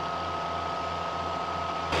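Steady drone of a tractor engine driving a PTO slurry stirrer that churns a pig slurry lagoon to keep the settling slurry mixed. The sound turns abruptly louder just before the end.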